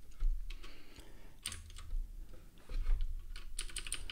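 Computer keyboard keystrokes: a few scattered clicks, then a quicker run of keystrokes near the end.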